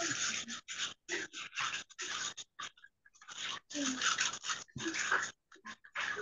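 Choppy bursts of noise and muffled voice coming over a video-call microphone, cutting in and out abruptly. A short laugh comes near the end.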